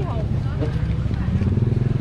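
A motorbike engine running close by, getting louder toward the end, with faint crowd chatter over it.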